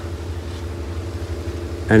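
A steady low mechanical hum from a running motor or engine, with no change in pitch. Speech starts again right at the end.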